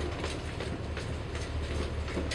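Footsteps of several people going down wooden stairs: irregular knocks and scuffs over a steady low rumble.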